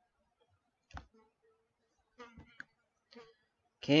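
A few quiet computer mouse clicks spread through a near-silent room, one about a second in and a small cluster around two and a half seconds.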